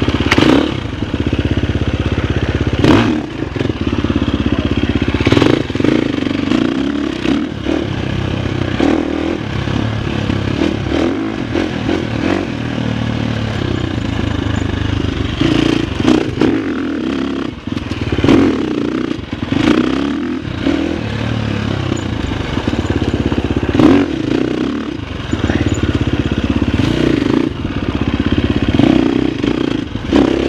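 Husqvarna FX350's four-stroke single-cylinder dirt bike engine running under load, its revs rising and falling with the throttle while riding. Scattered sharp knocks and clatter come through as the bike goes over rocks.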